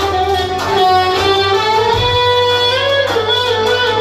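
Live party band music: a lead instrument plays a melody, holding notes and sliding between them, over a steady bass accompaniment.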